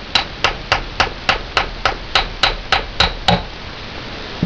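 A mallet tapping a steel pin punch about a dozen times at an even pace, three to four taps a second, driving a pin out of a Springfield 1911 pistol frame.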